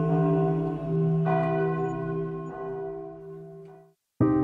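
Background music of sustained bell-like tones, with a new chord struck about a second in, fading out near the end.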